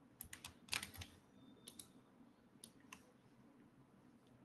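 Faint typing on a computer keyboard: a quick run of keystrokes in the first second, then a few scattered single clicks.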